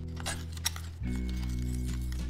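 Background music with sustained notes, over which a plastic spoon clicks and clinks against the side of a plastic bowl of water while stirring. There are a few light clicks in the first second, the sharpest about two thirds of a second in.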